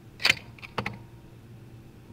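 A few sharp clicks close to the microphone: a strong one about a quarter second in, then a faint one and a third about half a second later, over a low steady background hum.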